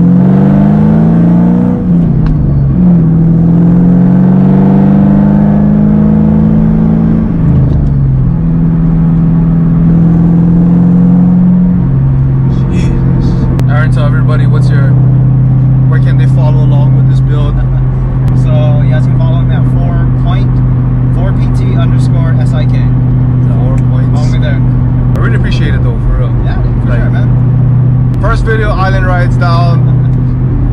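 Supercharged 2007 Mustang GT's 4.6-litre V8 pulling through the gears, heard from inside the cabin. Its pitch climbs and drops at gear changes about two and seven seconds in, then drops again about twelve seconds in and holds a steady cruise.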